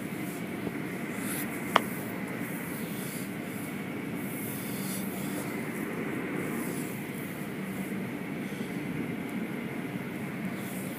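Automatic tunnel car wash running: a steady spray of water with a machinery hum, and one sharp click about two seconds in.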